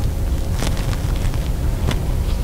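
Steady low rumble of room or microphone noise, with two faint clicks, one early and one near the end.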